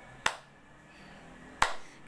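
Two sharp finger snaps, one shortly in and one near the end, about a second and a half apart.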